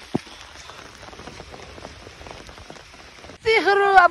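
Rain pattering on an umbrella held overhead: a steady, dense patter of small drops. A single short knock comes just after the start.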